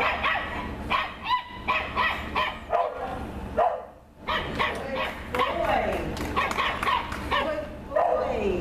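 Border Collie barking repeatedly in short, sharp, excited barks while running an agility course, with a brief break about four seconds in.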